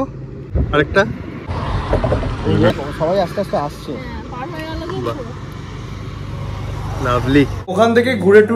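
People talking in low voices over a steady low rumble; the rumble cuts off abruptly near the end.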